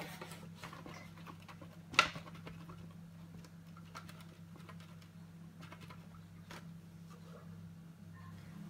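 Paintbrush dabbing paint onto a papier-mâché volcano: faint, irregular light taps, with one sharp knock about two seconds in, over a steady low hum.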